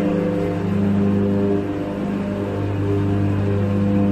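Deep, steady electrical hum with a stack of overtones from the running generating units and transformers of a hydroelectric powerhouse hall, easing slightly a little under halfway through.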